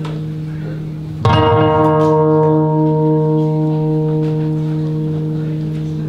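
Yamaha Silent Guitar played amplified: a low note sustains throughout, and a chord struck about a second in rings on for several seconds, slowly fading.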